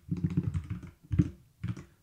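Typing on a computer keyboard: a quick run of keystrokes with short pauses between them.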